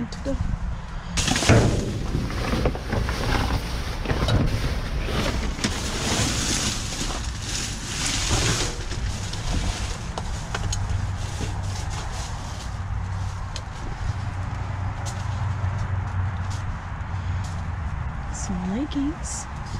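Plastic trash bags and bagged items crinkling and rustling as they are rummaged through and shifted by hand, loudest in the first half. Later the rustling eases off and a low steady hum runs under scattered small handling clicks.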